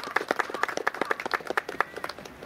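A small group of people applauding: a dense, irregular patter of hand claps that thins a little near the end.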